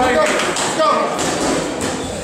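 Boxing gloves landing with short thuds during heavyweight sparring, a few blows spread through the moment, over a steady background of voices in the gym.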